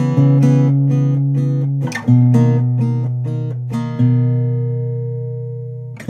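Cort CJ10X acoustic guitar played in picked chords, a new chord about every two seconds. The last chord is left ringing and fades out over the final two seconds.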